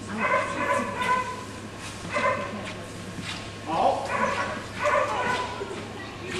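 A dog yipping and barking several times, short high calls a second or so apart.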